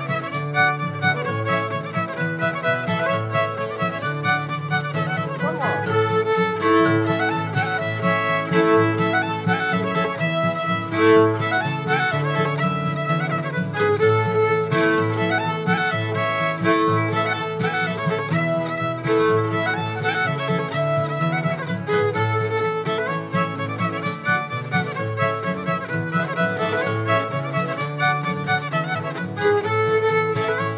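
Instrumental fiddle tune: the fiddle leads, backed by strummed acoustic guitar and piano accordion, playing steadily.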